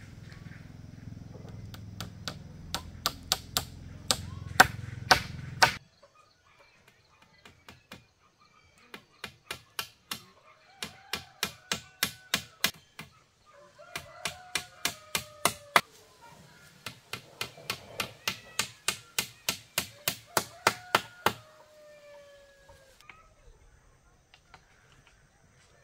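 Hammer blows on a bamboo frame, in bursts of several strikes about two to three a second, with short pauses between the bursts.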